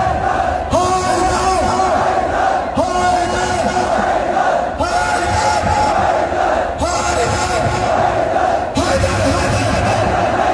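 A large crowd of Shia mourners chanting a Muharram nauha refrain in unison, a new phrase starting about every two seconds.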